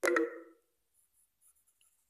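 A sudden knock with a short ringing tail right at the start, then faint scratching of a fountain pen's steel nib on notebook paper as the pen writes.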